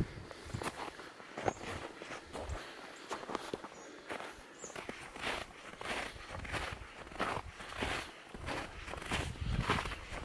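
Footsteps crunching through snow at a steady walking pace, about one and a half steps a second.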